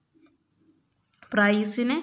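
A pause in speech, near silent apart from a couple of faint clicks, then a voice starts talking again about a second in.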